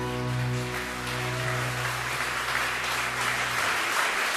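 The band's last chord ringing out and fading away over about three and a half seconds while audience applause builds up.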